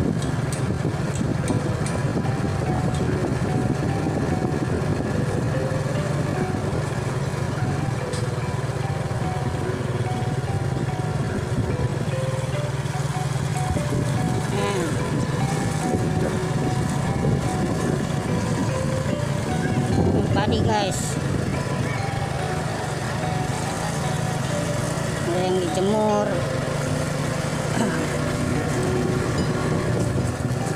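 A small motorcycle engine running steadily on the move, under background music with a melody that steps from note to note. A brief wavering voice-like sound comes about twenty seconds in and again a few seconds later.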